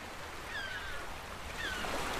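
Seawater sloshing and lapping around a camera bobbing at the surface, with a steady low rumble. Over it, a short high chirp falling in pitch repeats about once a second.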